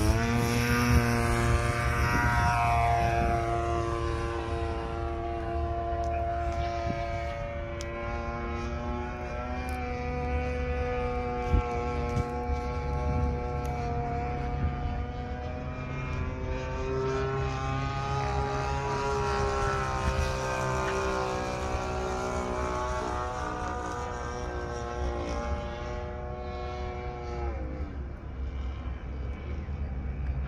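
Radio-controlled model airplane's engine running steadily as the plane flies, its pitch dropping as it moves away about two seconds in, rising again as it comes back around the middle, and falling away near the end.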